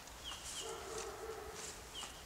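Birds chirping in woodland: a few short, high, falling chirps. A lower held note lasts about a second in the middle.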